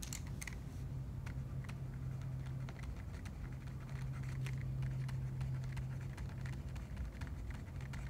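Stylus tapping and scratching on a tablet screen during handwriting: a run of faint, irregular clicks over a steady low hum.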